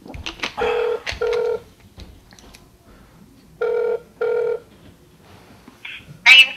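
Telephone ringback tone heard over a phone's speaker while a call waits to be answered: two pairs of short rings, each pair two brief tones with a short gap, about three seconds apart.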